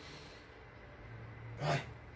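A weightlifter's strained breathing between reps of a barbell overhead press: a low held hum of effort, then a short, loud voiced grunt near the end.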